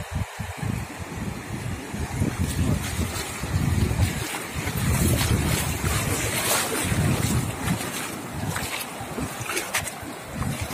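Wind buffeting the microphone over small waves washing in on a sandy beach.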